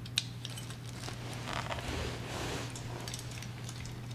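Hands handling a fireplace blower's speed control and its wiring: a sharp click just after the start, then scattered small clicks and rustling.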